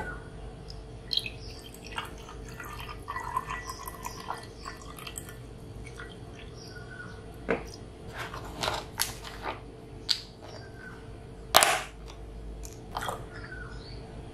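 Cold brew coffee poured from a glass jar into a glass beer mug, with small clinks and taps of glass and a trickle of liquid. About two-thirds of the way in comes a single louder knock, the loudest sound here.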